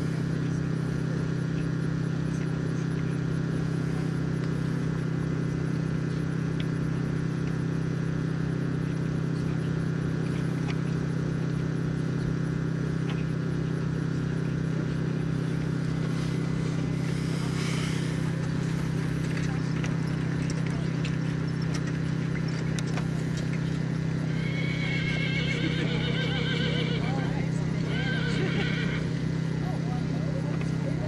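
A pair of Lipizzaner carriage horses being driven through a course, with a horse whinnying in two long calls near the end, over a loud steady low hum.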